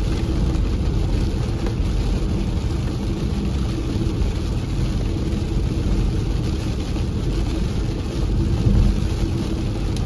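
Steady cabin road noise from a Ford Mustang Mach-E, an electric car with no engine sound, cruising at about 70 mph on a wet highway: a low, even rumble of tyres running over water-covered pavement.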